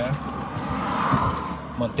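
A vehicle passing on the highway: its tyre and road noise swells to a peak about a second in, then fades, over a low steady hum. A man's voice begins just at the end.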